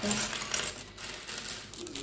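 Small plastic Lego bricks clattering and clicking against one another and a wooden tabletop as a hand pours and spreads them: a quick, irregular run of light clicks.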